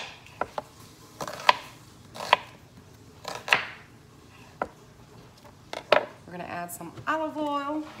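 A kitchen knife slicing through an onion and striking a wooden cutting board: a run of sharp, irregularly spaced cuts over about six seconds. A woman's voice starts near the end.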